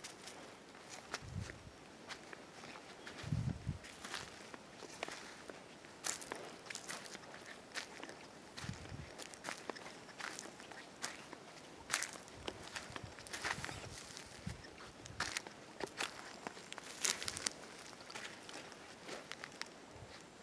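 Footsteps crunching over dry twigs, leaves and ash, with irregular snaps and crackles and a few dull thuds.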